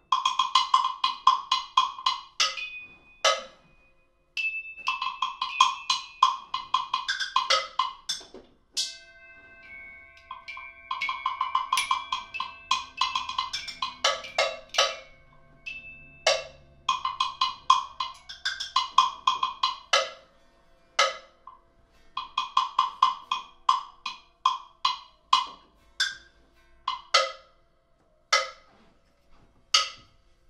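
Improvised percussion on metal tools and bars struck with mallets: quick runs of ringing, clicking strikes, several a second, in bursts of a few seconds with short pauses, a few struck pitches ringing on longer in the middle.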